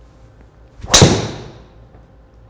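Driver clubhead striking a teed golf ball: one sharp, loud crack about a second in that rings off briefly. The strike was a little low on the face.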